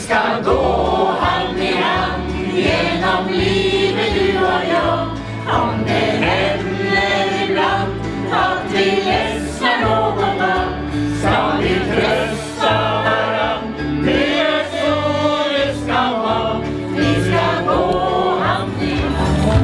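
A crowd singing a song together to instrumental backing, with a bass line moving underneath.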